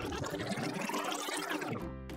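One long breath blown by mouth into a rubber balloon, inflating it; the rush of air lasts nearly two seconds and stops shortly before the end, over background music.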